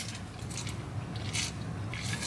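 Quiet sipping and swallowing from a water bottle's spout lid, with a few faint clicks of mouth and lid.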